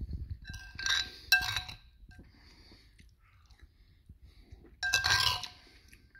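Metal spoon clinking against a soup bowl as it scoops: two ringing clinks close together about a second in, and a longer clink-and-scrape near the end.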